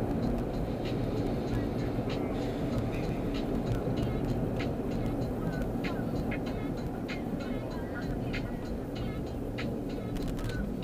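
Steady road and engine rumble inside the cabin of a moving car, with the car stereo playing music more quietly over it.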